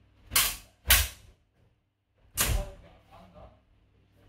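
Three sharp impacts of practice swords, a spadroon against a dussack, in a sparring exchange: two in quick succession about half a second apart, then a third about a second and a half later.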